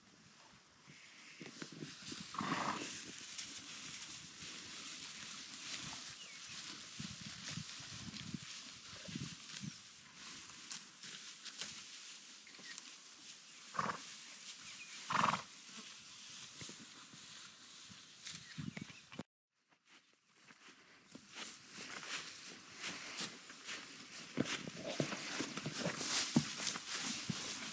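Horses grazing at close range: grass rustling and tearing as they crop it, with three short louder sounds from the animals, one early and two close together past the middle.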